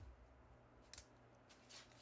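Near silence broken by a few faint, short scratches of a small hand tool on paper, about a second in and again near the end.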